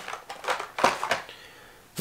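A few short clicks and crinkles of plastic packaging being handled: carded Hot Wheels blister packs being set aside and a plastic shopping bag being taken up. The sounds die away about a second and a half in.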